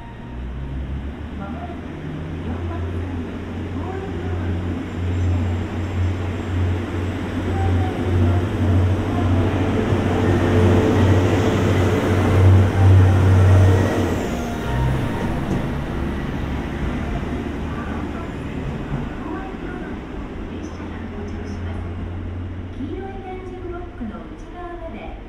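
JR Central KiHa 25 diesel railcar pulling out of the station, its engine drone growing louder as the train passes close to reach its loudest about twelve seconds in. The drone then drops away at about fourteen seconds, leaving a fading rumble of the cars on the rails.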